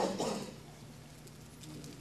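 The tail of a man's spoken word ringing off the hall in the first half-second, then a pause of quiet room tone.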